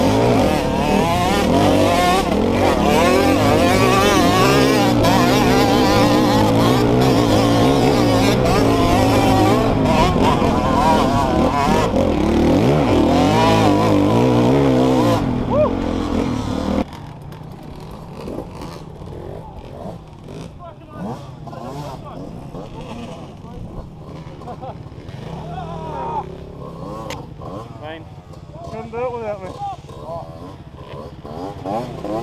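Dirt bike engine ridden hard, its pitch rising and falling with the throttle, heard loud from the rider's helmet camera. About seventeen seconds in the sound drops suddenly to a much quieter stretch of engines at lower revs.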